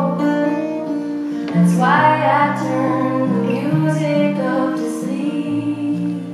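Live folk-pop song: a woman singing lead over acoustic guitar, with sustained low notes underneath. A new sung phrase begins about two seconds in.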